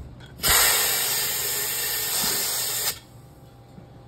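Compressed air from a shop air hose hissing into a small 16x6.50-8 turf tire on its rim: one steady hiss of about two and a half seconds that starts and cuts off sharply.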